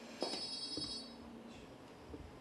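A click, then one high-pitched electronic beep of under a second.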